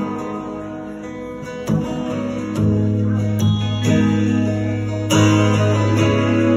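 Acoustic guitar strumming chords in a live instrumental passage, with no singing. New chords are struck every second or so, and the playing swells louder about halfway through.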